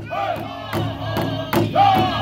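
Powwow drum group: several men striking one large shared drum in unison in a steady beat of roughly two and a half strikes a second. Over the beat they sing in high, gliding voices.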